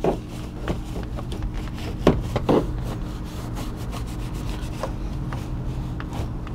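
A long-handled, angled bristle brush scrubbing inside a car's wheel well: a run of short, scratchy strokes, with a few harder ones early and about two seconds in, loosening baked-on burnt tyre rubber. A steady low hum sits underneath.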